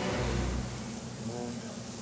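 Sea scallops searing in a hot oiled frying pan, a steady sizzling hiss with a low steady hum underneath.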